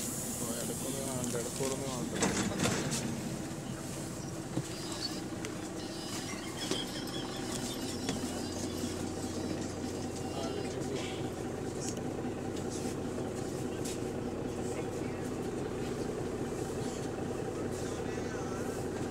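Inside a single-deck bus, GAL MEC6: a steady low drone from the bus's running engine and equipment, which gets stronger about eight seconds in, under passengers' chatter and a few knocks.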